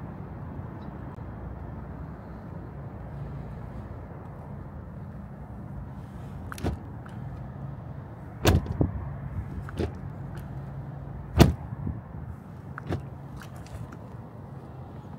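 Several sharp clicks and knocks as the front door of a 2024 Lexus RX350h is unlatched and swung open; the loudest comes late, just before the door opens. A steady low hum runs underneath.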